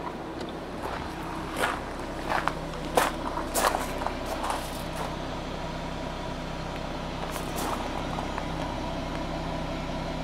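Footsteps on gravel over the first half, over the steady low hum of a 2013 Ford Mustang's 3.7-litre V6 idling.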